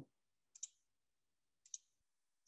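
Two faint computer mouse clicks about a second apart, in near silence.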